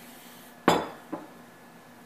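Kitchenware clinking: one sharp clink with a short ring about a third of the way in, then a lighter tap about half a second later.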